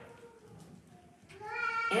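A short bleat like a sheep's 'baa', rising in pitch, about a second and a half in.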